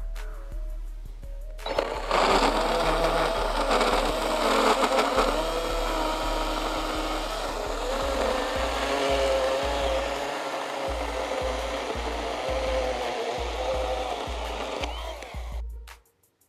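Kobalt 24V brushless 6-inch battery pruning saw cutting through a six-by-six wooden post. The motor runs lightly for the first couple of seconds, then bites in and runs loud under load, its pitch wavering as the chain chews through the wood. It stops abruptly near the end as the cut finishes.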